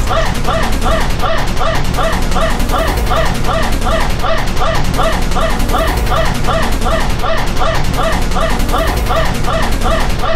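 Digitally effect-processed audio: short, rising, yip-like chirps repeating about four times a second over a steady low hum.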